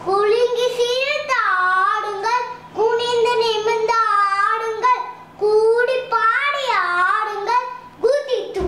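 A young child singing a Tamil nursery rhyme on his own, without accompaniment, in short melodic phrases with brief breaks between them.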